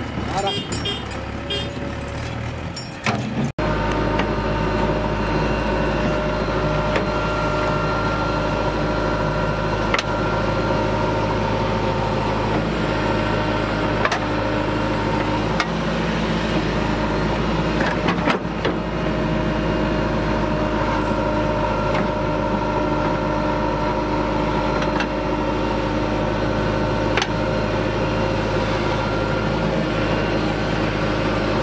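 JCB 3DX backhoe loader's diesel engine running steadily under load as it digs and loads soil, with a few sharp clanks along the way. For the first few seconds a different engine sound is heard, which cuts off abruptly.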